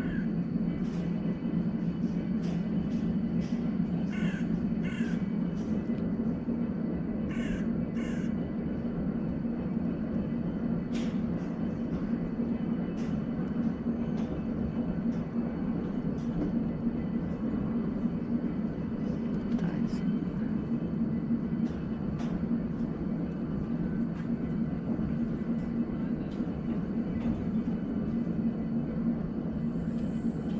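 Crows cawing repeatedly, in short harsh calls that come in clusters, over a steady low hum.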